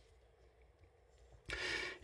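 Near silence, then about one and a half seconds in a short, soft intake of breath lasting about half a second.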